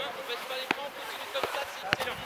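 Three sharp knocks of a football being kicked, spaced about half a second apart, over faint distant voices of players.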